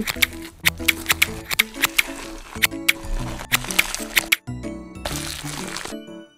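Background music over a run of sharp, scratchy clicks from a small knife scraping the scales off a whole fish.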